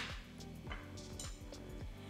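Background music with steady low notes, and under it faint bubbling of a soy-and-sugar sauce simmering in a saucepan.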